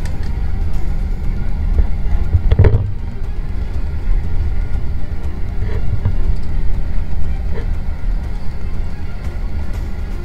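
Steady low rumble of a moving passenger train heard from inside the carriage, under background music. A single thump comes about two and a half seconds in.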